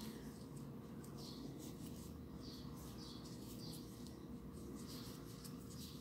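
Faint, soft rubbing and scratching of cotton crochet thread being pulled through loops with a crochet hook, over a faint steady hum.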